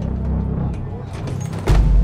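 Low, rumbling drone of a tense film score, with a sudden heavy booming hit near the end.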